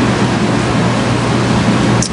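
Steady hiss with an even low hum beneath it: the background noise of the microphone and recording.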